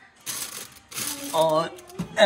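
A plastic bag rustling twice, briefly, as it is handled, followed by a single spoken word.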